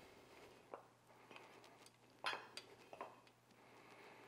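Near silence, broken by a few faint, soft scrapes of a block of mozzarella drawn across a handheld flat metal grater into a steel bowl. The clearest scrape comes a little past the middle.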